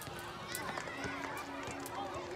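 Children playing: many overlapping young voices calling and shouting, with a few sharp knocks among them.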